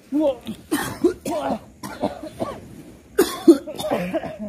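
A man coughing and heaving in a string of about seven short, harsh bursts.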